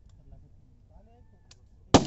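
A single sharp, loud gunshot near the end, trailing off in a short echo, with faint voices in the background before it.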